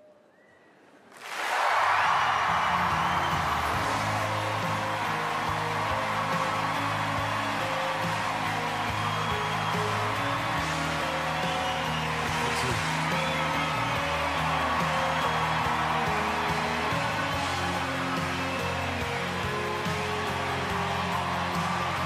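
A moment of hush, then about a second in an audience bursts into cheering and applause that keeps going. A sustained music track plays underneath and changes chord a couple of times.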